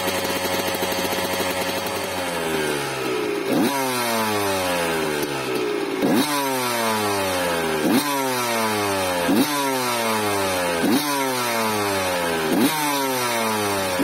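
1991 Honda CR125's single-cylinder two-stroke engine held at steady revs for about two seconds, then dropping back, after which the throttle is blipped about every second and a half, each blip a sharp rise in revs that falls away again. The engine has a larger main jet just fitted and is running rich, which the owner prefers to a seizure.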